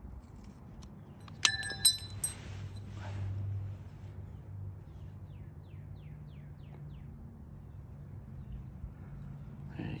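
Handling noise as small adhesive rubber pads are peeled from their backing paper and pressed onto small plastic brackets: a few sharp clicks and a crinkle about a second and a half in, then faint rustling, over a low steady hum. Midway a bird gives a quick run of faint descending chirps.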